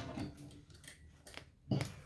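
Denim patchwork and its backing being pulled out from a sewing machine and moved across the table after a seam: a few light clicks and rustles, with one louder rustle near the end.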